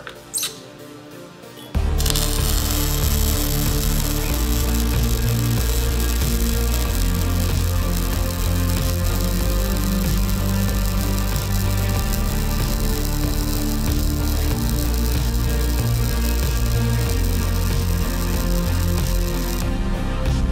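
Background music that comes in suddenly about two seconds in and holds a steady level, after a few light clicks.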